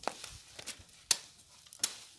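A blade chopping into a cassava plant's stem where the roots join, cutting the root clump free: three sharp chops, the louder two about a second in and near the end, with rustling of the plant between.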